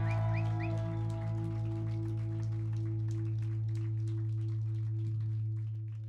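A low note left ringing from the band's amplified bass and guitars at the end of a live pop-punk set, held steady with scattered light ticks over it. It begins to fade out near the end.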